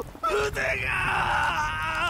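A man's long, wavering scream of agony from an anime character whose arms have just been cut off. It starts about half a second in.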